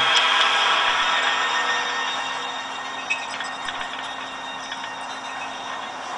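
Film soundtrack playing through the small built-in speakers of a Nokia N95 8GB phone: a thin, hissy sound that slowly fades, with a faint tick or two midway.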